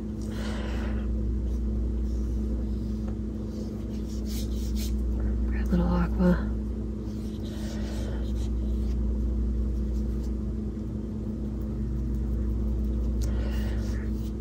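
Steady low background hum that swells and fades slowly, with a brief voice sound about six seconds in.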